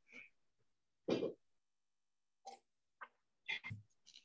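A man clearing his throat close to a computer microphone about a second in, followed by several brief, scattered sounds.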